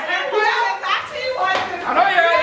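Excited voices of a group of adults talking, calling out and laughing over one another, with no single clear speaker.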